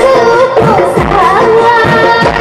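A woman singing a Bihu song into a microphone over live band accompaniment, with drum strikes about twice a second under the melody.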